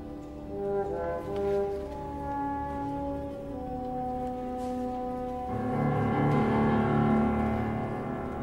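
Symphony orchestra playing slow, long-held chords with brass prominent. About five and a half seconds in, a fuller chord comes in and the music grows louder.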